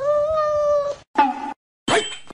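Domestic cat meowing: one long meow held at a steady pitch for about a second, a shorter meow just after it, and a third beginning near the end.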